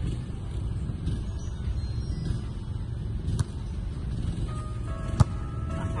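Two sharp smacks of a volleyball being struck by hand, a lighter one about three and a half seconds in and a louder one about five seconds in, over a steady low outdoor rumble.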